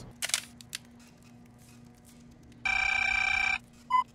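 A telephone ringing once: a single steady ring just under a second long, about two-thirds of the way in, with a short click near the start.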